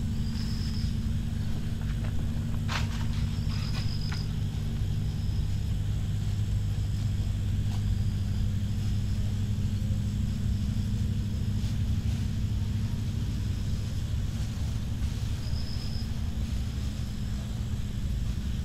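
A steady low hum throughout, with a few faint short high chirps and a couple of brief clicks in the first few seconds.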